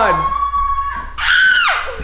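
High-pitched scream: a thin held squeal, then a loud shriek about a second in that drops in pitch as it breaks off.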